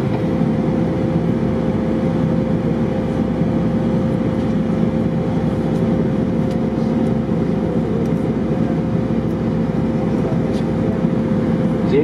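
Airbus A319 cabin noise in flight: a loud, steady rush of engine and airflow, with a constant hum running through it.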